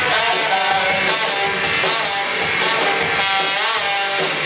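A live rock band playing at full volume: electric guitars, drum kit and trombone together, with the pitch sliding in places.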